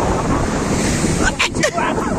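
Wind buffeting the microphone over small waves washing up a sandy shore, a steady rushing noise. About one and a half seconds in there is a brief crackle.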